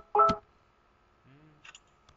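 Two short electronic beeps about a third of a second apart, each a chord of steady tones, mixed with computer keyboard clicks near the start. A few more faint key clicks follow.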